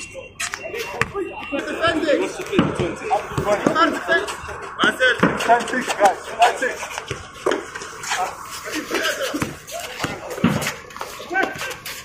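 Players' voices calling out during a basketball game, with a basketball bouncing on the hard court surface.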